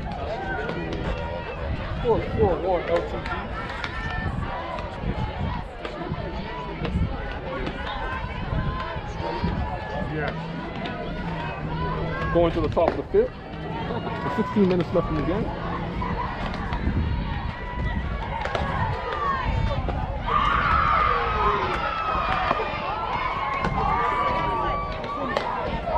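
Voices of players and spectators around a softball field: overlapping talk and calls, growing louder and busier near the end.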